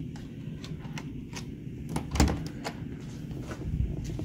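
Key-card lock and lever handle of a hotel room door clicking as the door is unlocked, a string of small clicks with the loudest, a click and thump, about two seconds in.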